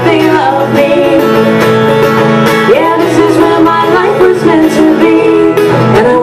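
Acoustic guitar strummed steadily, with a woman singing over it in a live solo performance of a laid-back trop rock song.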